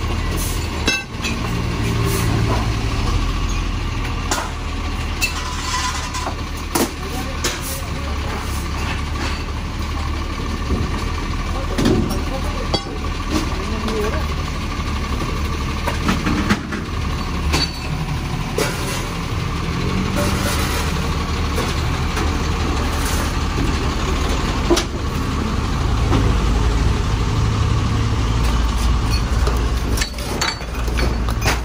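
Dump truck's diesel engine idling steadily, with scattered knocks and clatter of wooden debris and junk being shovelled and thrown into its bed.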